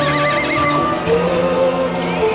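Music with long held notes, and over it a horse's whinny with a wavering, trilling pitch in the first second as the horse rears.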